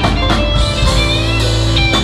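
Live worship band playing: an electric guitar melody with slight pitch bends over drum kit, bass and keys.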